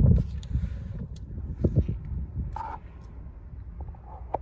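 Wind rumbling on a phone microphone, with a few light knocks and clicks from a car's rear door being swung open and the phone being handled in the first half-second and again just before the two-second mark.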